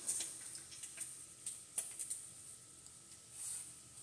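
Bacon frying in a skillet: a faint steady sizzle with scattered crackles and pops of spitting fat. A brief rustle about three and a half seconds in.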